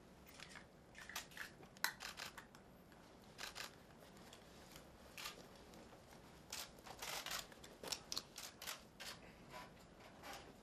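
Faint camera shutters clicking, some singly and some in quick runs of several frames, the busiest runs near the end.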